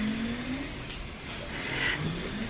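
Muffled, steady mechanical noise of cable installation work in the house, coming through from downstairs; it is a little loud, with a short rising tone at the start.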